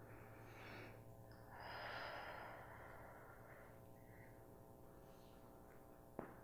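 Very faint breathing of a woman exercising: two soft exhales in the first half, over a steady low hum. Otherwise near silence.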